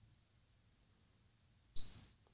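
Near silence, then near the end a short high beep from the digital watch's buzzer as the reset button is held down, signalling that the watch has entered its setting mode.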